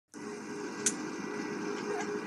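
Steady drone of a Boeing 747's jet engines heard inside the cabin in flight, with a faint steady hum in it and a single click a little under a second in.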